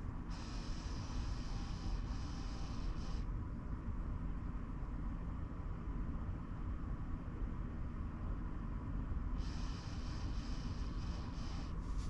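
An old Core 2 Duo laptop running as it boots, giving a steady low hum and rumble with a faint hiss that comes and goes, which the owner thinks may come from a failing hard drive or a disc stuck in the optical drive.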